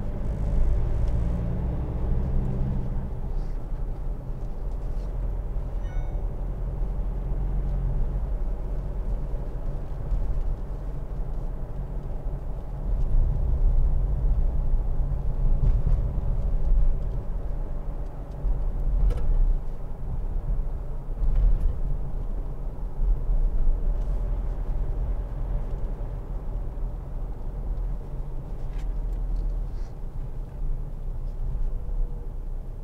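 Mitsubishi L200's 2.5-litre DI-D four-cylinder turbo-diesel engine running under way, heard from inside the cab as a steady low rumble with tyre and road noise. It swells louder a couple of times in the middle.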